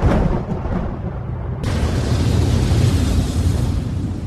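Cartoon explosion sound effect: a sudden blast at the start, then a long low rumble that a loud hiss joins about a second and a half in, easing off near the end.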